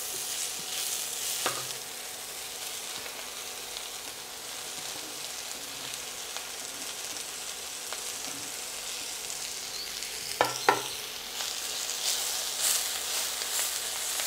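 Fresh fenugreek leaves sizzling in a hot stainless steel pan as they are stirred with a spatula: a steady frying hiss. A few light knocks against the pan, one about a second and a half in and two close together near ten seconds.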